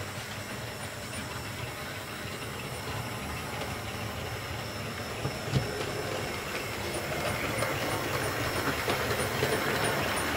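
OO gauge model trains running on the layout's track: a steady mechanical running noise that grows louder over the last few seconds as a second train approaches. A single sharp click sounds about halfway through.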